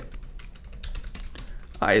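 Typing on a computer keyboard: a quick run of key clicks, with a spoken word starting near the end.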